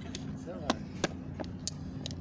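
Domino tiles clacking down onto a table as they are played: about five sharp clacks at uneven intervals, with faint voices underneath.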